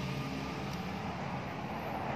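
Steady low background hum and noise with no distinct clinks or knocks.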